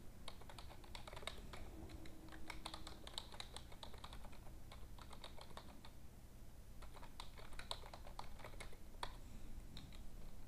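Computer keyboard typing, faint irregular keystroke clicks in quick runs with short pauses, over a low steady hum.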